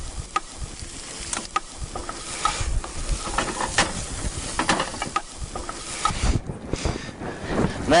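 Prawns and diced vegetables sizzling in a frying pan, stirred with a wooden spoon that scrapes and knocks against the pan every second or so.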